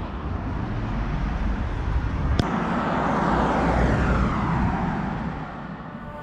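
Engine noise of a passing vehicle: a rush that swells to a peak midway and then fades, with a sharp click about two and a half seconds in.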